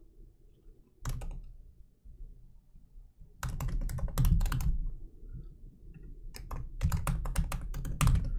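Typing on a computer keyboard in short runs of rapid keystrokes with pauses between: a few keys about a second in, a fast run from about three and a half seconds, and another near the end.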